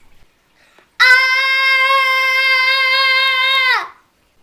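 A child's voice holding one long, high, steady note, like a sung or shouted "ahhh", for almost three seconds, starting about a second in and sliding down in pitch as it trails off near the end.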